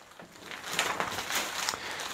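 Plastic wrapping crinkling and rustling as it is pulled off a rolled, vacuum-packed memory foam mattress topper. It comes as a run of quick crackles starting about half a second in.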